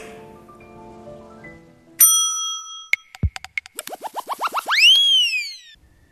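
TV segment-intro sound-effect jingle. Soft music fades out, then a bright bell ding rings about two seconds in, followed by a quick falling tone and a run of clicks. A string of quick rising chirps ends in one long glide that rises and then falls.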